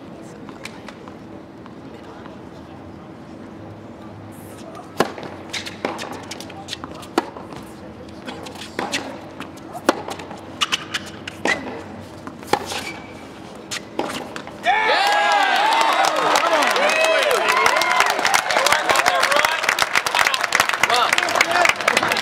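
Tennis rally: racket strikes on the ball about once a second for several seconds, after a quiet start with a faint steady hum. About fifteen seconds in, the sound jumps suddenly to a much louder, busy mix of voices.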